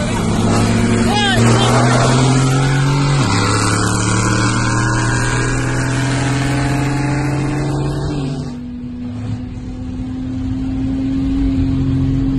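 Car engine at full throttle, its pitch climbing steadily, dropping sharply at upshifts about three seconds and eight seconds in, then climbing again, heard from inside the cabin along with wind and road noise.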